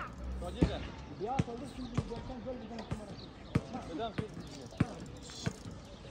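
A ball bouncing on a hard outdoor court surface, about eight sharp bounces spaced roughly two-thirds of a second apart, with voices between them.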